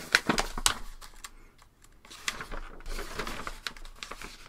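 Paper sheets handled and flipped through by hand: irregular crisp rustles and light taps, busiest in the first second and again in the second half, with a short lull between.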